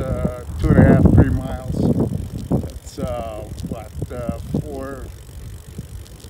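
Wind buffeting the microphone of a camera on a moving bicycle, loudest in the first second or so and easing off, with a man's voice speaking indistinctly through it.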